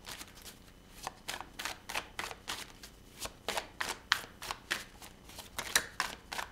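A deck of tarot cards being hand-shuffled overhand, packets of cards slipping from one hand onto the other: a quick, irregular run of soft card snaps, two or three a second.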